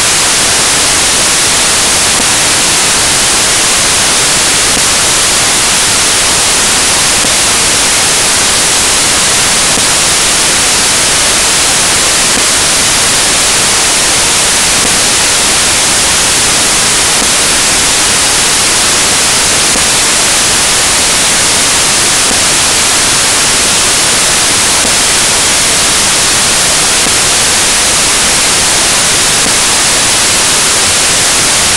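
Loud, steady hiss like white noise or static, even and unchanging, strongest in the treble, with no other sound in it.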